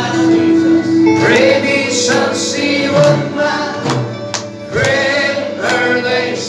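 Church congregation singing a worship song together, accompanied by a strummed acoustic guitar.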